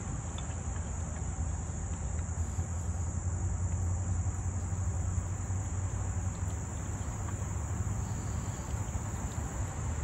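Steady, high-pitched chorus of insects, such as crickets, over a low background rumble.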